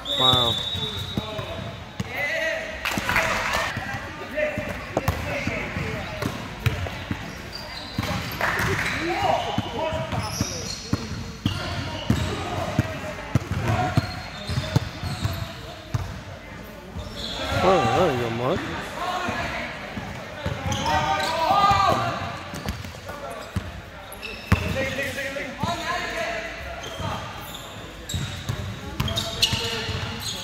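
Basketball bouncing on a hardwood gym floor as players dribble during a game, with repeated thuds throughout. Indistinct calls from players and spectators ring out several times in the large hall.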